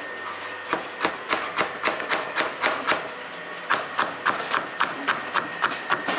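Kitchen knife chopping carrots into thin strips on a plastic cutting board: steady rhythmic taps of the blade on the board, about four a second, starting about a second in.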